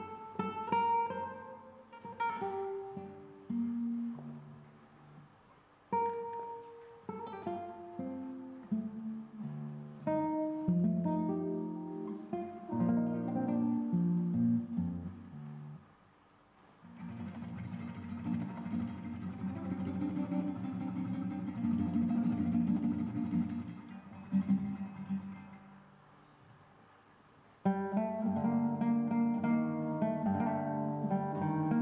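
Solo classical guitar played fingerstyle: melodic phrases of plucked notes broken by short pauses, then, after a brief drop just past halfway, a long stretch of sustained repeated chords that fades down before a louder passage starts near the end.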